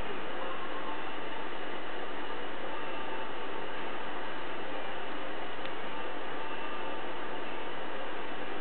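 Steady hiss with a few faint, unchanging tones beneath it. No clear events or voices stand out.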